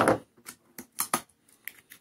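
Adhesive tape being picked at and peeled off a cardboard box: a few short crackling rips, the loudest right at the start and smaller ones about half a second, a second and nearly two seconds in.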